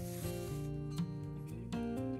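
Soft acoustic guitar background music, with a brief rasp of wool yarn being pulled through jute canvas at the start.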